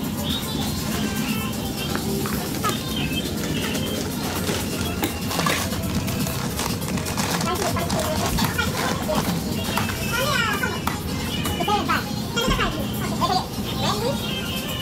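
Background music mixed with indistinct voices of people talking, a steady busy din with no single loud event.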